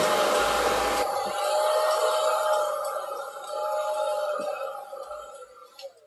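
Handheld hair dryer blowing, a steady rush of air over a motor whine. The air noise drops about a second in, and the sound fades away toward the end.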